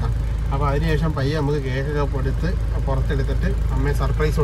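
Steady low rumble of a car heard from inside the cabin, under a man talking.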